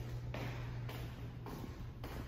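Footsteps on a tiled floor, about two steps a second, over a steady low hum.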